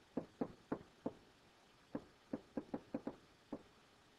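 Stylus tip tapping on a tablet screen while handwriting, about a dozen short, faint clicks at an irregular pace, a quick cluster of them in the second half.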